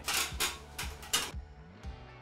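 Background music with a soft beat, over three or four short scraping, rustling noises in the first second and a half from a day-night roller blind and its plastic bracket being handled.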